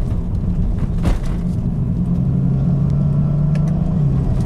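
In-cabin sound of a BMW 335i's twin-turbo inline-six pulling the car along, over a steady road rumble. The engine note grows stronger and holds steady from about two seconds in, with a brief knock about a second in.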